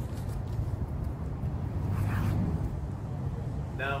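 Outdoor city street ambience: a steady low rumble of distant traffic.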